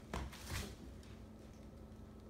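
Two short, soft noises in quick succession near the start, then faint room tone.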